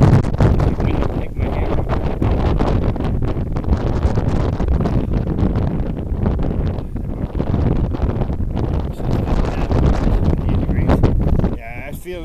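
Strong gusty wind blowing across the camera microphone: a loud, low rumbling noise that swells and eases with the gusts.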